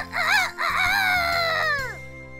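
A rooster crowing cock-a-doodle-doo: a short wavering start, then one long held note that falls away near the end, loud, over light background music.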